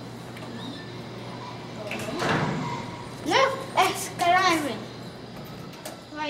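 Speech: a child's high voice making a few short, unclear utterances in the second half, after a soft noisy swell about two seconds in.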